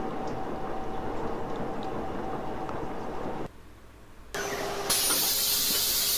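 Gear-cutting machine running steadily, a low mechanical noise with two steady tones over it, while cutting oil is fed to the cut. The sound drops away about three and a half seconds in, and about a second later a loud steady hiss begins.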